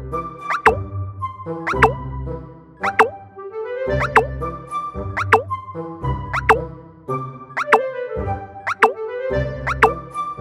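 Playful children's cartoon background music, a short phrase repeating about once a second, each time with a pair of quick sliding 'plop' sound effects.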